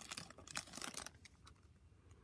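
Faint crinkling and small clicks of a 2022 Topps F1 trading-card pack's foil wrapper being torn open and the cards slid out, dying away to near quiet after about a second.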